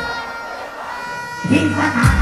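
Live dancehall beat over a concert PA cuts out, leaving crowd noise and a voice. The bass-heavy beat drops back in about a second and a half in.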